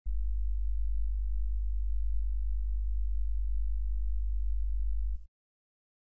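A steady, loud low hum with faint higher overtones above it, cutting off suddenly about five seconds in.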